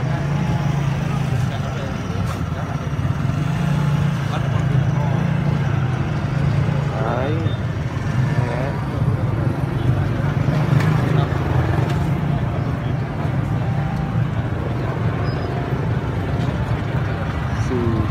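Outdoor street-market background noise: a steady low rumble with people talking in the background, one voice standing out briefly about seven to nine seconds in.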